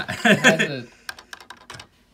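A few spoken words, then about a second of quick, light clicks and taps from hands on a plastic LEGO set.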